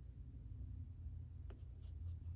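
Faint rubbing near the microphone with two light ticks about a second and a half in, as a cat brushes against the camera, over a low steady room hum.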